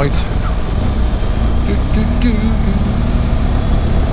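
Motorcycle engine running at low road speed with a steady low rumble, picked up by the bike's on-board camera, its note rising slightly about two seconds in.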